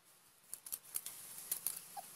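A cleaver blade cutting into a large silver carp's scaly skin: a run of short, crisp clicks and scratches, starting about half a second in and coming thicker in the second half.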